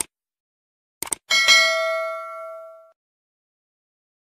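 Subscribe-button sound effect: a mouse click, then a quick double click about a second in, followed by a bell ding that rings out and fades away over about a second and a half.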